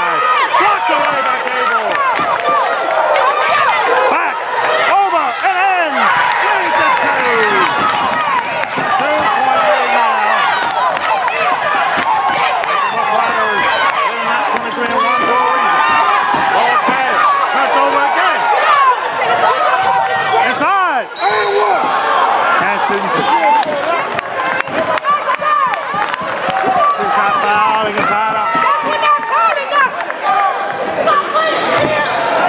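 Live basketball game in a gymnasium: the ball bouncing on the hardwood court amid players' and spectators' voices and many short knocks and squeaks, echoing in the gym.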